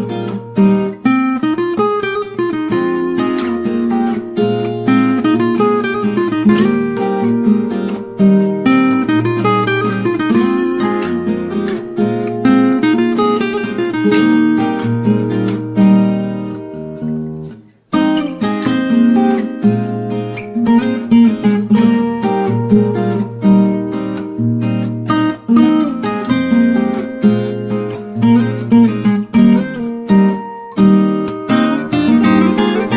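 Background music on acoustic guitar, plucked and strummed. Just past halfway it fades out briefly and starts again.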